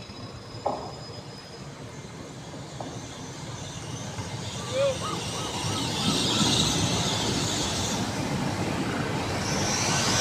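GWR Class 802 train running into the platform as it arrives, getting steadily louder as it draws alongside, with a high hiss joining the rumble from about six seconds in.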